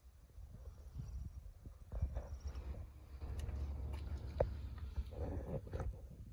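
Low rumble of wind and handling on a phone microphone, with scattered clicks and light footsteps on pavement as the person filming walks.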